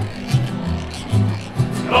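Acoustic guitars strumming a rhythmic instrumental passage with a regular beat, repeating low bass notes under the strums.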